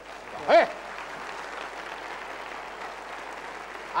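Studio audience applauding a contestant's correct answer, a steady even clatter of many hands, with a brief voice exclamation just before it builds.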